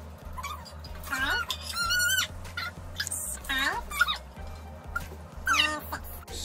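A household pet gives several high whining calls, each rising and then falling in pitch, about two and a half seconds apart.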